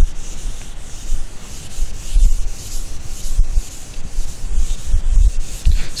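Handheld duster scrubbing marker writing off a whiteboard in repeated rubbing strokes, a continuous scratchy swish that swells and falls, with dull low knocks from the board as it is pressed.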